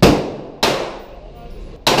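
Three pistol shots, the second about half a second after the first and the third a little over a second later, each ringing and echoing off the walls of an indoor range.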